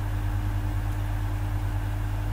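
Steady low hum with a faint even hiss, unchanging throughout.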